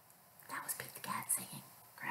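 A woman whispering softly for a second and a half after a brief pause.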